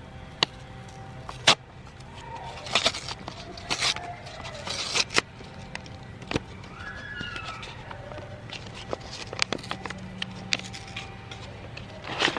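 Sealed foil-lined Polaroid film pouch being torn open and crinkled by hand: sharp crackling rips and rustles about once a second.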